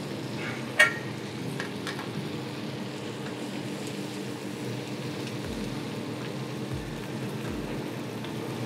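Steady drone of a commercial gas range and extraction hood, with fish and crab claws frying in a pan on the burner. One sharp clink of a utensil against the pan a little under a second in.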